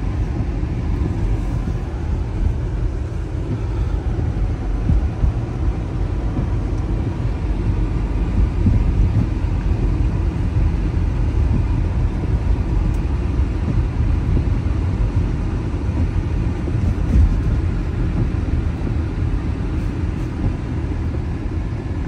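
Car driving along a snow-covered, slushy road, heard from inside the cabin: a steady low rumble of engine and tyres.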